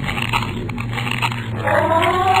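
An animal-like call, dog-like, that rises and then falls in pitch near the end, over a steady low hum.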